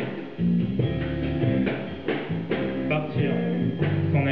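Live band music led by electric guitar, steady sustained notes with a few sharp strikes.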